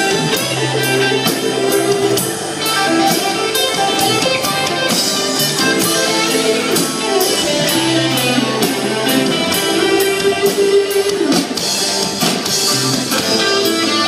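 Live rock band playing an instrumental stretch of a song without vocals: electric guitars over bass and a drum kit keeping a steady beat.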